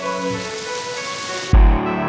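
Soundtrack music: held chords under a rain-like hiss. At about one and a half seconds the hiss cuts off and a deep bass hit lands with a fuller, lower chord.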